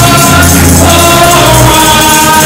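Gospel song performed live: group singing over sustained bass notes, with a tambourine keeping the beat.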